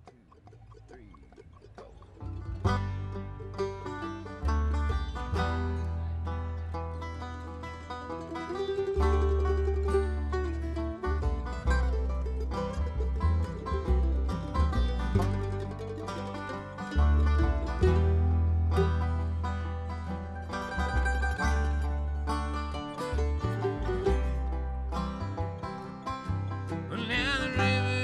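Bluegrass string band playing a song's instrumental intro on banjo, mandolin, acoustic guitar and upright bass. It swells in over the first couple of seconds, and a voice begins singing just before the end.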